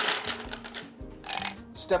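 An ice cube clinks against a glass right at the start, followed by soft background music.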